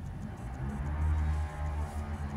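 Background music with deep, held bass notes that change every half second or so.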